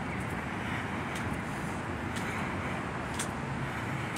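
Steady outdoor city noise: a continuous rumble of road traffic, with a few faint light ticks about once a second.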